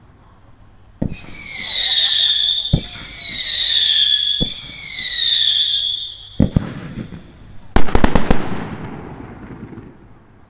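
Fireworks: three launches, each a thump followed by a whistle that falls in pitch for under two seconds, one after another. A couple of pops follow, then about eight seconds in a quick cluster of loud bangs, the loudest part, which echoes away.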